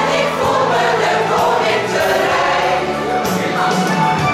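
A large mixed choir singing, with held notes over sustained low tones.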